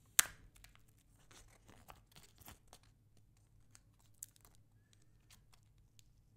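Clear plastic protective film peeled off an iPod touch screen: a sharp crackling snap right at the start, then scattered small crinkles and a light click about four seconds in.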